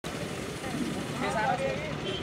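Steady outdoor background noise with a low rumble, and faint voices talking for about half a second just past the middle.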